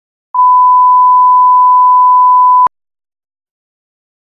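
1 kHz line-up test tone played with SMPTE colour bars: one steady pure beep that starts about a third of a second in and cuts off with a click after a little over two seconds.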